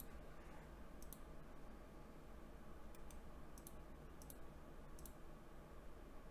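A few faint, sharp computer mouse clicks at irregular intervals, several of them doubled, over a low steady hum.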